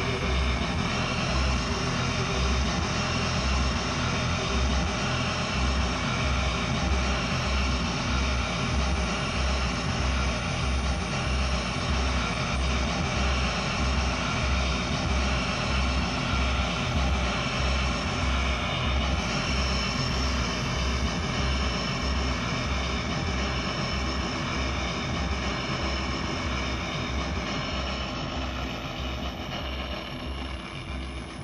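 Experimental noise-rock band playing live: a dense, droning wash of electronic noise and held tones over an evenly repeating low bass pulse, easing off slightly near the end.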